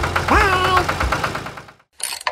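Tractor engine idling with an even putt-putt of about ten beats a second, fading out near the end. A short rising vocal cry sounds about half a second in.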